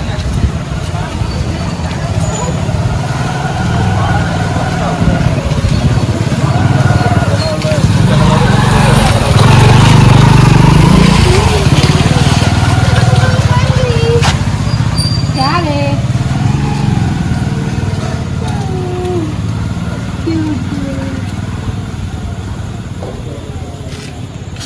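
A motor vehicle's engine rumble, swelling to its loudest near the middle and slowly fading away, with people's voices over it.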